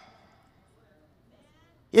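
A pause in a man's preaching: near silence with only faint room tone, his voice trailing off just as it begins and starting again right at the end.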